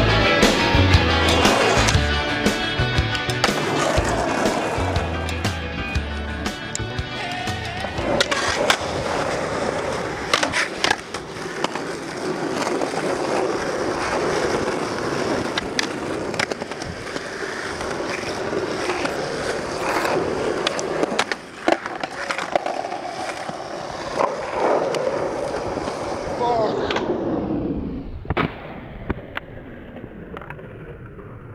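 Skateboarding: wheels rolling on pavement, with sharp board clacks from pops and landings and a truck grinding along a concrete ledge. A rock song with a steady beat plays for the first several seconds, then stops, and the sound turns muffled near the end.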